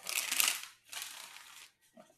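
A deck of oracle cards being shuffled by hand: two quick rustling runs of shuffling, each a little under a second.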